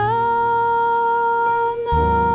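A woman singing one long held note into the microphone, sliding slightly up into it at the start, in a slow jazz-style song. Near the end a plucked double bass note comes in underneath.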